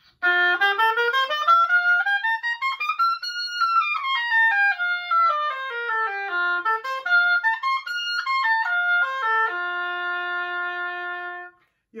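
An oboe playing a quick scale over two octaves, rising to the top and back down, then a short up-and-down figure and a long held low note that stops just before the end.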